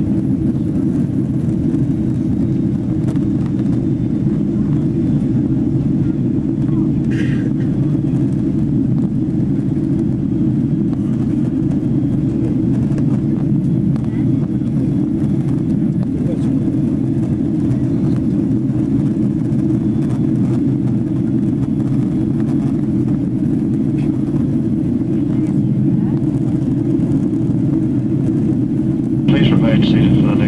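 Boeing 767-300ER passenger cabin noise in flight: a steady, low engine and airflow roar that holds level throughout. A louder, brighter sound cuts in about a second before the end.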